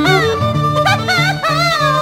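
Peruvian folk orchestra music: a violin melody with a wide vibrato over a steadily repeating bass line.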